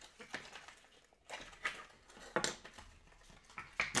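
Scattered clicks and light knocks of small plastic plug adapters being handled and pulled out of a cardboard holder, with a few louder clicks spread through.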